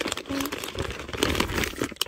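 Steady rustling and crinkling with many small clicks as hands rummage inside a small coated-canvas tote bag.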